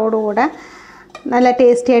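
A woman speaking, with a short pause of under a second in the middle.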